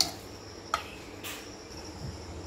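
A metal spoon knocking and scraping against a steel mixing bowl three times while tossing raw potato cubes in spice powder, over a steady high chirring of crickets.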